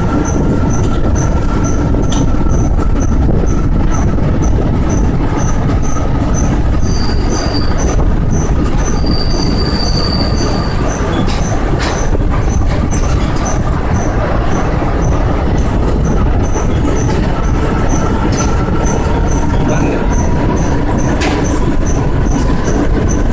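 Express train running at speed through a rock tunnel: a loud, steady rumble of the coaches' wheels on the rails, with a thin wheel squeal held throughout and brief higher squeals about a third of the way in and again near the middle. A few sharp clicks and a faint high tick about twice a second sit over the rumble.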